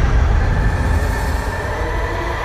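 Low rumbling drone in a dark, cinematic logo-intro soundtrack, with a faint steady high tone above it.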